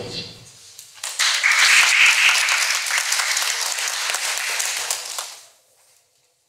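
Audience applauding, starting about a second in, holding for about four seconds and dying away near the end.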